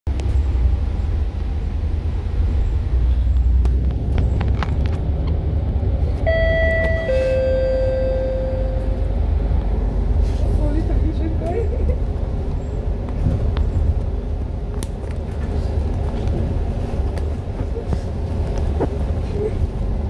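MAN A95 Euro 5 double-decker bus running, heard from inside the upper deck: a steady low engine and road rumble. About six seconds in, an electronic two-note chime sounds once, stepping down from a higher note to a lower, longer one.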